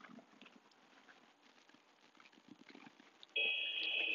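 Faint background at first, then about three seconds in the practice timer's chime rings out suddenly, one bright ringing tone that holds past the end. It is the 10-second cue that signals the switch between a 10-second inhale and a 10-second exhale.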